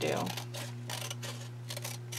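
Scissors snipping through printer paper in several short cuts.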